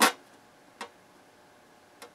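Two sharp clicks as a printed circuit board is handled against a bare aluminium chassis: a loud one at the start and a fainter one just under a second later.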